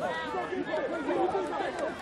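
Several people talking at once, their voices overlapping in a general chatter.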